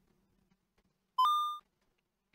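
A single short electronic beep about a second in. It starts on one tone, steps slightly higher and fades within half a second: a computer's alert sounding as the image-processing run completes.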